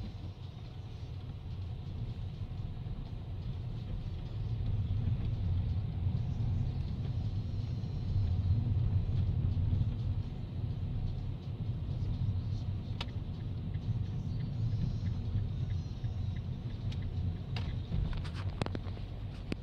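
Car interior noise while driving: a steady low rumble of engine and tyres on the road, swelling somewhat in the middle.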